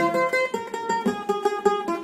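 Guitar picked in a quick run of single notes, an instrumental introduction before the singing begins.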